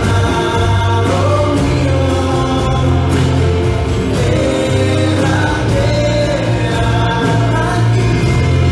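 Live worship band playing, with voices singing long notes that glide up and down over sustained low notes.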